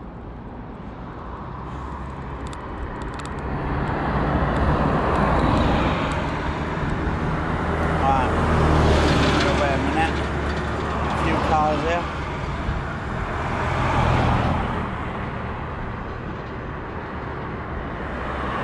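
Road traffic passing close by: several motor vehicles go by one after another, each swelling and fading, a small lorry among them near the middle.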